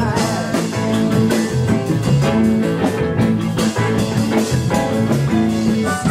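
Live band playing an instrumental passage, with electric guitar to the fore over bass guitar, drums and keyboards.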